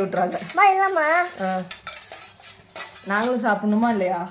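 Metal spoon stirring and scraping around a stainless steel bowl of pani puri water, with pitched scraping stretches at the start and end and sharp clinks against the bowl in between.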